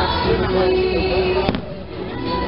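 Fireworks show with its music playing, and one sharp firework bang about one and a half seconds in.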